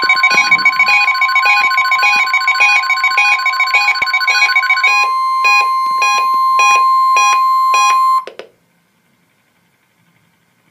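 NOAA Weather Radio 1050 Hz warning alarm tone sent as the weekly test. It is a single steady, loud tone that cuts off suddenly about 8 seconds in. A weather-alert radio's electronic alarm beeps over it in a rapid repeating pattern, which thins to about three beeps a second for its last few seconds.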